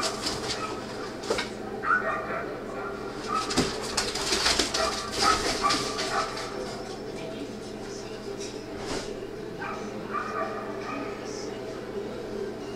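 Dog barking at intervals as it runs an agility course, over steady arena background noise and voices, played back through a television's speaker.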